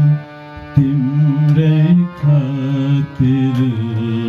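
Harmonium playing a devotional melody in sustained reedy notes that step from pitch to pitch, with tabla accompaniment; the playing dips briefly just after the start, then carries on.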